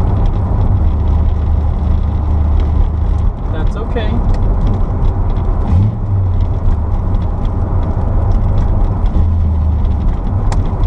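Inside the cabin of a 1975 Chevrolet Corvette on the move: its small-block V8 and the road give a steady low drone, with loose car parts in the rear storage area rattling and clicking throughout.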